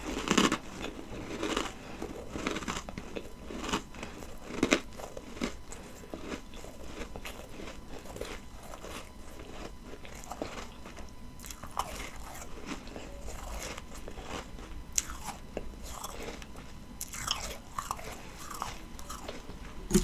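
A mouthful of ice being chewed up close, with many short crunches. They come thickly in the first few seconds, thin out, and return a few times near the end.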